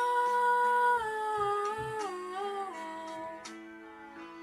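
A girl's solo singing voice holds one long note over a soft backing track, then steps down in pitch through the next two seconds as the phrase ends, fading out; the accompaniment carries on more quietly.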